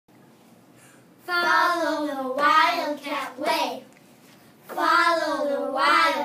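Three children singing together in unison: two sustained sung phrases, the first starting about a second in, the second starting near the end.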